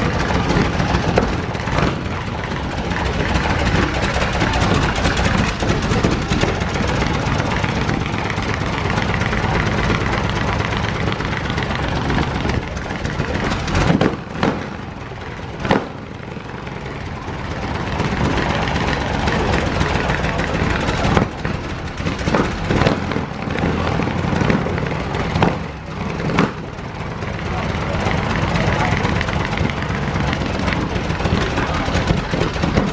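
A vintage car's engine running at idle amid crowd chatter, with a couple of brief drops in level and sharp clicks midway and near the end.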